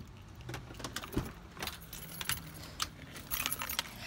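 A bunch of keys jangling in short, irregular clinks, with a soft thump about a second in.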